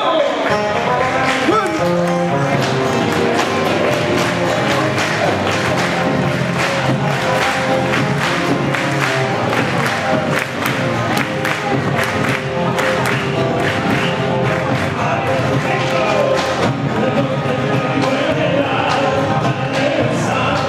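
Argentine folk music played live by a folk group, with voices singing over the instruments.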